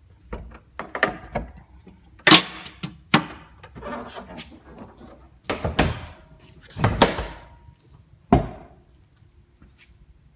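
Carbon-fibre hood of a Honda Civic being lowered and shut: a series of knocks and thuds, the sharpest about two seconds in, with more near six, seven and eight seconds.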